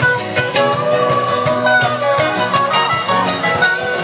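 Live band playing an instrumental passage: electric guitars over bass and drums, with a sustained, bending lead line and a steady beat.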